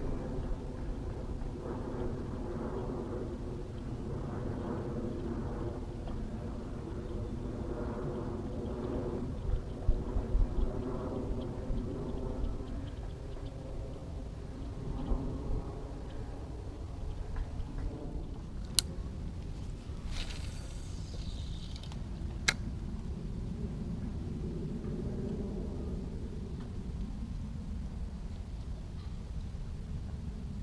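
Low steady rumble with a faint wavering motor-like drone behind it. About nineteen seconds in comes a sharp click, then a swish, and a second sharp click a few seconds after the first, fitting a fishing reel being worked around a cast.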